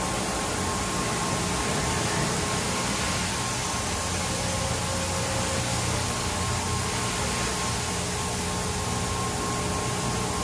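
Mark VII SoftWash XT rollover car wash running its brush pass: a steady rush of spinning cloth brushes and spraying water, with a faint steady hum underneath.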